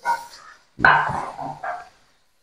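A dog barking a few times: a short bark right at the start, then a longer bark and one more shortly after, about a second in.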